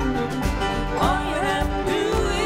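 Live acoustic folk-country band music, with acoustic guitar and banjo over a steady low beat and a melody line that glides upward about a second in.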